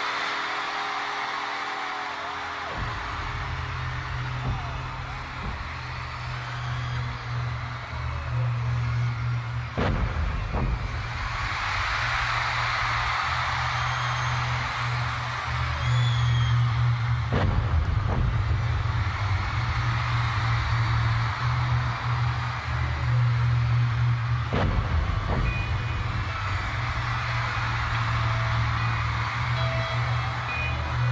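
Live concert recording at the end of a song: a crowd cheering and screaming over a low, steady drone from the band that comes in a few seconds in, with a few single booming hits as the band moves into the next song.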